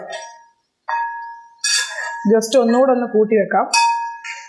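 Flat metal spatula scraping and clinking against the side of a wide aluminium pan while stirring sliced vegetables, in short sharp bursts about one and a half seconds in and again near the end. A woman's voice speaks briefly in between.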